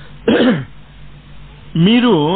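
A man's voice making two short vocal sounds without clear words: a brief sound falling in pitch about a quarter second in, then a longer sound with a wavering pitch starting near the end.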